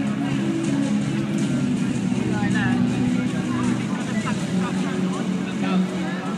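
Music played loud over a public-address system in a large hall, with the steady low notes running throughout. From about two seconds in, crowd voices and shouts rise over it.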